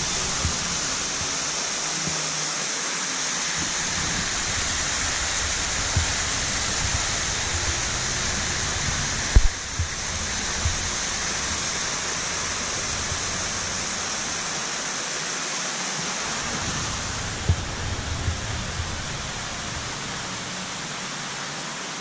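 Steady rushing hiss like running water, even throughout. A few soft knocks sit on top of it, with one sharper knock about nine seconds in.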